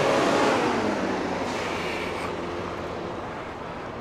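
A passing vehicle's rushing noise, fading away over a few seconds.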